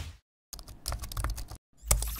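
Keyboard typing sound effect: a quick run of key clicks lasting about a second, as text is typed into a search bar. A short burst comes just before it, and a sharp, louder click near the end.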